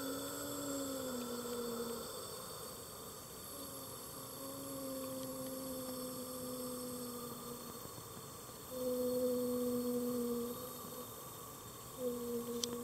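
Low humming tone held in three long notes of a few seconds each, with slight drifts in pitch and short breaks between them; the last note is the loudest.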